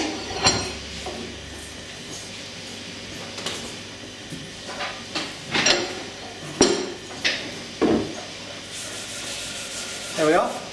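Hand press doming a titanium pendant into a polyurethane rubber pad: a handful of sharp clicks and knocks of the steel punch and press parts, the loudest about two-thirds of the way through, with rubbing and handling in between.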